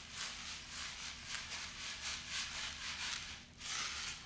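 Dry sand poured from a bowl into a plastic tray: a soft, fluctuating hiss of falling grains that dies away near the end.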